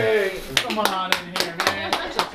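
Hands clapping in quick, even claps, about six or seven a second, starting about half a second in.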